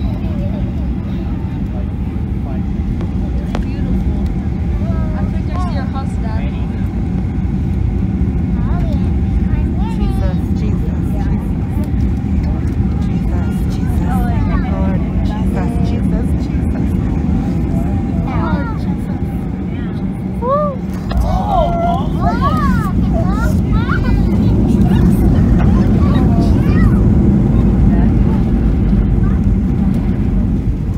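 Steady low rumble of jet engines and airframe inside the cabin of a WestJet Boeing 737, growing a little louder in the second half, with faint, unclear passenger voices.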